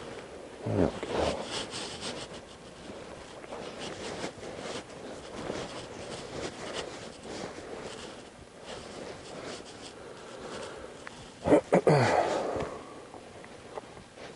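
A horse blowing out through its nostrils twice, once about a second in and again near the end, each a short snort that falls in pitch. Between the snorts there are low rustling and shuffling sounds.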